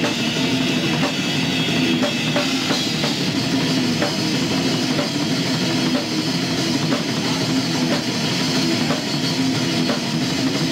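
Death metal band playing live: drum kit and distorted electric guitar at full volume, one continuous stretch of the song.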